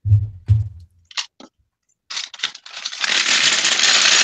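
Loose plastic Lego pieces being dumped into a tray: a couple of dull thumps and a few clicks, then from about three seconds in a loud, dense clatter of many small pieces pouring out.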